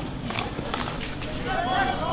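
Players' voices calling out across a field hockey pitch, with a few sharp knocks in the first second.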